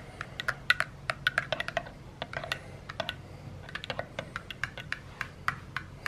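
Metal teaspoon stirring acacia honey into coffee in a ceramic mug, clinking against the inside of the mug in rapid, irregular ticks, several a second.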